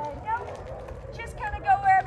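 A person's voice speaking a few words, the last one drawn out near the end, over a low outdoor rumble.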